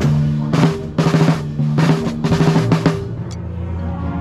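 Snare drum played with sticks, a series of sharp strokes and short rolls over sustained chords from the rest of the ensemble; the drumming stops about three seconds in while the chords continue.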